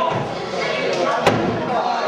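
A wrestler's body slamming onto the wrestling ring mat: one sharp, loud slam a little past a second in, over crowd chatter.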